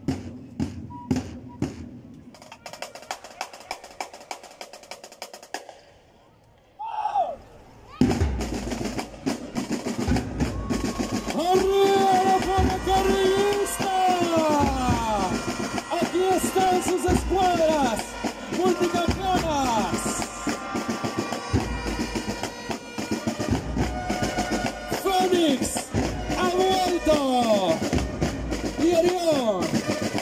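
School marching band playing: drums with held horn-like notes that slide downward at their ends, starting about a quarter of the way in. Before that comes a run of sharp, evenly spaced clicks that fade into a brief near-quiet.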